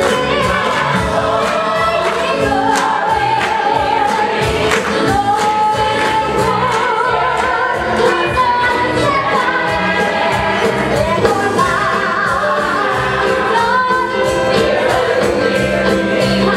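Musical theatre cast and choir singing a gospel-style show tune over instrumental accompaniment with a steady beat.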